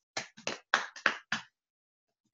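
A quick, irregular run of about seven sharp taps within the first second and a half, then nothing.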